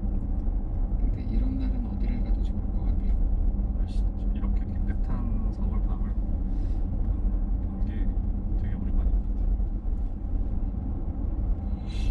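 Steady low road and tyre rumble inside the cabin of a moving Mercedes-Benz EQC 400, a battery-electric SUV, with no engine note under it.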